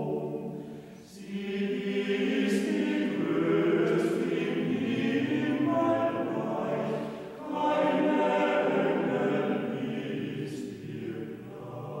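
Men's choir singing in harmony in long sustained phrases, pausing briefly about a second in and again about seven seconds in.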